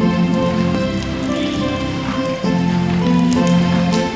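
Music playing: held notes that change every second or so over a steady low line.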